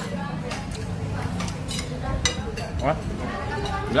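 Metal spoon clinking against a ceramic soup bowl and plate several times as soup is eaten, over background chatter.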